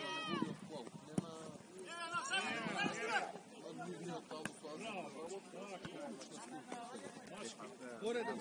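Several voices calling and shouting across a youth football pitch, overlapping, loudest in the first three seconds, with a few sharp knocks.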